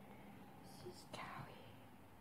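Near silence, with faint whispering and a soft click about a second in.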